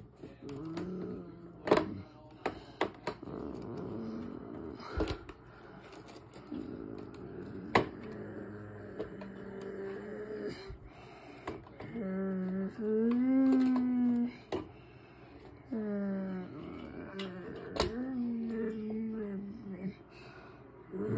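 Sharp plastic clicks and rustling as a die-cast model car is worked loose from its clear plastic display case. In the second half come wordless voiced sounds that rise and fall in pitch.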